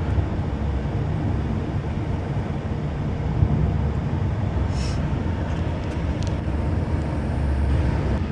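Steady low rumble of road and engine noise inside a Lexus sedan's cabin while it drives, with a brief hiss about five seconds in.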